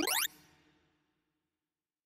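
Synthesized tones of a sorting-algorithm visualizer ending a fast rising pitch sweep, the pass over the now-sorted array. The sweep cuts off about a quarter second in and fades away, then there is silence.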